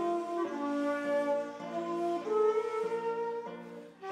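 Two shakuhachi bamboo flutes playing a slow melody together, held notes changing about once a second, with classical guitar accompaniment.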